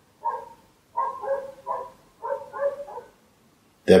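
A dog barking in a quick series of short barks, about half a second apart, heard thin and faint beside the nearby voices.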